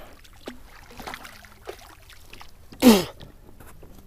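Faint water splashing and small knocks around a fishing kayak while a hooked fish thrashes at the surface beside it, with one short, loud vocal exclamation from a man, falling in pitch, about three seconds in.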